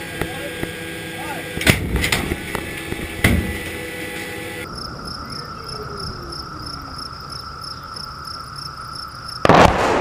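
A few sharp metallic bangs inside an artillery gun's crew compartment. Then insects chirring steadily over a grassy range, and about nine and a half seconds in, a very loud boom as an artillery shell explodes on the impact area, with a rumbling tail.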